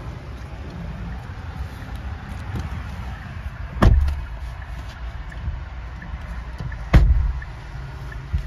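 Two car doors of a 2018 Kia Sorento shutting with loud thumps, the first a little under four seconds in and the second about three seconds later, over a steady low rumble.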